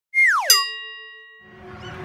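Intro sound effect: a quick falling, whistle-like glide, then a bright ding about half a second in that rings out and dies away over about a second. Faint background noise rises near the end.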